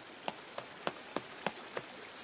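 Light footsteps of a cartoon sound effect, short sharp steps evenly paced at about three a second over a faint hiss.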